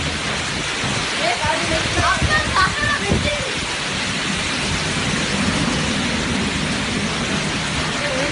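Steady, loud rain falling, an even hiss of downpour, with faint voices in the background.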